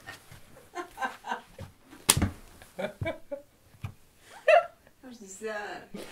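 Two men laughing quietly in short, scattered bursts, with one sharp smack about two seconds in.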